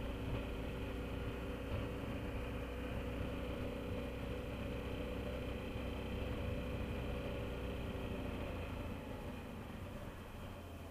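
BMW F650GS Dakar's single-cylinder engine running steadily as the motorcycle rides along, with a constant low rumble; the sound eases off a little near the end.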